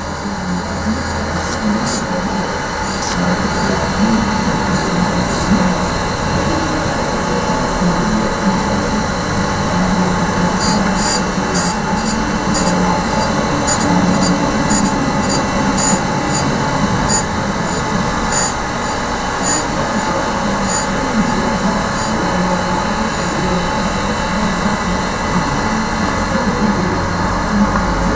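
Victor 618 surface grinder running, its spindle and abrasive wheel giving a steady whir. Over it come short, sharp hisses as the wheel grinds the workpiece, a few at first and then about twice a second through the middle.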